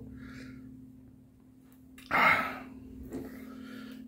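A man's sharp, breathy exhale about two seconds in, after a faint breath at the start, as he copes with the burn of a hot-pepper tincture in his mouth.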